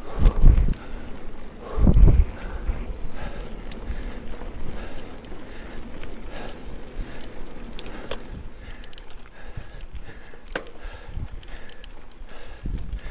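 Specialized Camber 650b mountain bike ridden over a dirt trail: Fast Trak tyres rolling on dirt and gravel, with the bike rattling and clicking over bumps. Wind buffets the microphone twice in the first two seconds.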